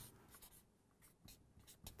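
Faint strokes of a felt-tip marker on flip-chart paper: a few short scratches as X marks are drawn.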